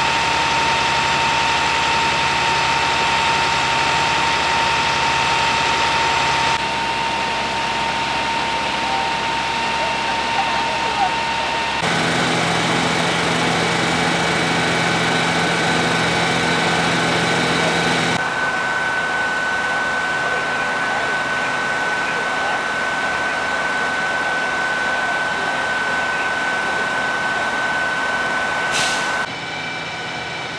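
Fire engines' engines running steadily, with a constant high whine over the engine noise. The sound changes abruptly several times where shots are cut together.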